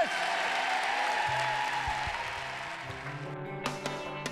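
A large audience applauding, the applause fading as background music comes in. A low bass line enters about a second in, with sharp picked notes near the end.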